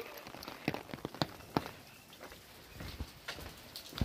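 Rain falling, with scattered sharp drop hits on an umbrella held just overhead.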